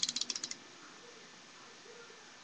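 A quick rattle of about ten small sharp clicks in the first half second, from small hard plastic model parts and a hobby knife knocking together as they are handled.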